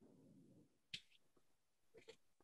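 A single short snip of small fly-tying scissors cutting material at the hook, about a second in; otherwise near silence.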